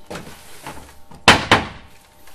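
Two loud blows on a wooden picket gate, a quarter-second apart, about a second and a half in: the gate being nailed shut with an axe used as a hammer.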